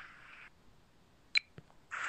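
A pause in a man's narration: quiet background hiss with one short sharp click a little past the middle, followed by a fainter tick.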